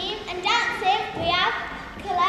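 Children's high voices speaking and calling out in short bursts, echoing in a large hall.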